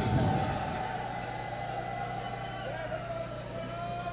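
Faint background voices of people talking over a steady low electrical hum, with a dull low thump right at the start.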